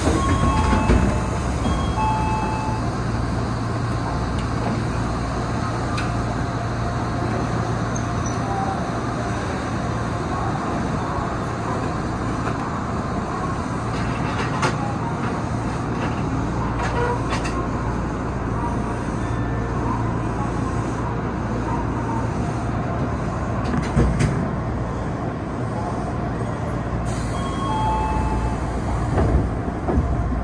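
Steady hum of a stationary Odakyu 8000-series electric train's onboard equipment, heard inside the driver's cab. A few light clicks and short high tones come near the start and again near the end.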